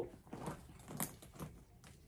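Quiet handling sounds from a handbag and its shoulder strap with metal hardware: a few light clicks and rustles, the sharpest about a second in.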